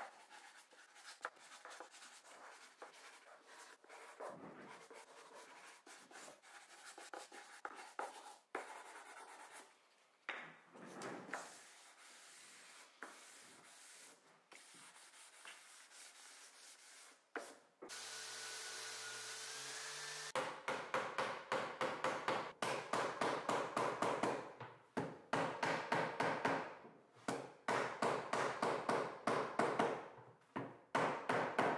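Hand-sanding wood with a small sanding block: faint, irregular rubbing strokes over the fingers of a slat's box-jointed end. Past the middle there is a brief steady hum. The sanding strokes then come quicker, louder and more even.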